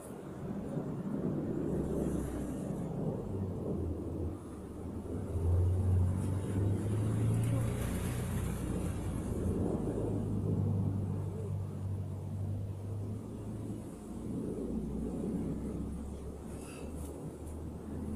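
Low, steady rumble of an engine running nearby, swelling for a few seconds around the middle.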